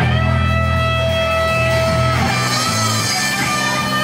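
Live rock band opening a song: electric guitars holding sustained chords over held bass guitar notes, the chord changing a little past halfway through.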